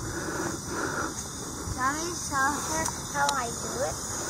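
A voice speaking a few soft, quiet words about two and three seconds in, over a faint steady hiss.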